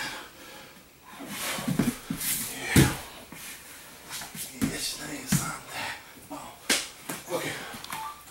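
Bodies, hands and feet slapping and thudding on gym mats during a fast grappling scramble, a string of separate smacks with the loudest about three seconds in.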